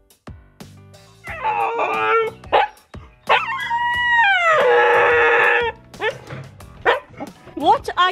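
Siberian husky puppy howling while stuck under a house: a short howl, then a long howl of about two seconds that bends down in pitch, followed by a few short yelps.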